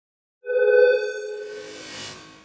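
Electronic intro sting: a sustained synthesized tone starts about half a second in and slowly fades while a hissing, shimmering swell builds up over it.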